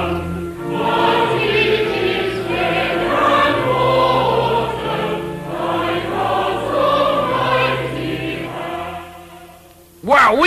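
Music with choral singing: a choir holding sustained chords over a bass line that steps from note to note, fading out near the end.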